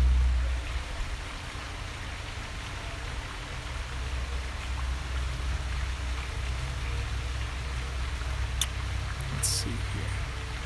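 Steady low rumble under an even hiss of outdoor background noise, a little louder in the first half-second, with a few faint clicks near the end.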